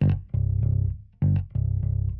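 Five-string electric bass playing a Motown-style line down on its low B, C and D notes: a handful of short plucked notes with brief gaps between them. Down in that register the line just doesn't sound right for the style.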